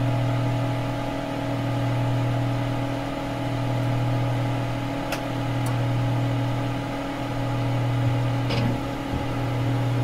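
A steady low electronic hum, swelling and fading about every two seconds, with a few faint clicks.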